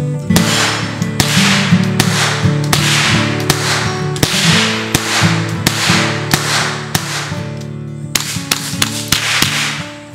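A Ruger 10/22 Takedown semi-automatic .22 rimfire rifle with a Magpul stock being fired in a steady string of sharp shots, about one every three-quarters of a second, each with a brief ringing tail; after a pause of about a second and a half near the end, a few more shots. Acoustic guitar music plays underneath.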